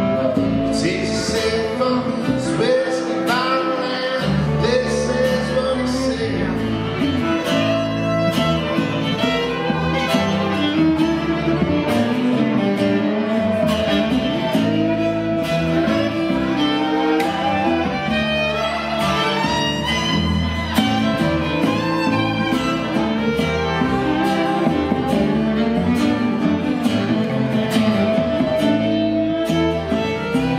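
Live acoustic country band playing: a bowed fiddle carries the melody over strummed acoustic guitar and plucked upright bass, at a steady, even volume.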